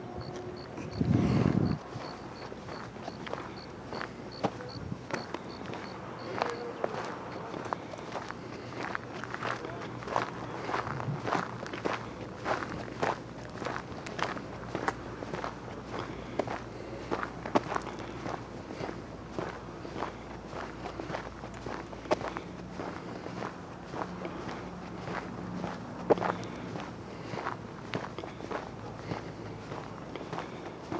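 Footsteps crunching on a dry dirt and gravel path at a steady walking pace. A brief low rush, like wind on the microphone, comes about a second in and is the loudest sound.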